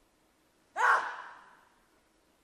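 A single sudden, short vocal cry about three-quarters of a second in, rising in pitch and trailing off within a second, from a person in the arena as the lifter sets himself at the bar.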